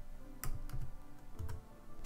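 A few scattered computer keyboard keystrokes, typing in a value, over faint background music.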